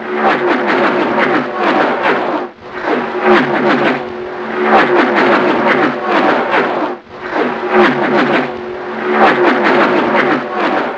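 Midget race car engines revving hard in repeated surges, each lasting about four to five seconds, with dips between them.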